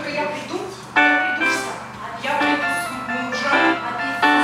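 Yamaha portable keyboard played in slow sustained chords, a new chord struck about a second in and then roughly every second or so.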